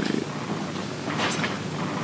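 Low murmur of indistinct, quiet talking in a large room, with a few hissing consonants breaking through.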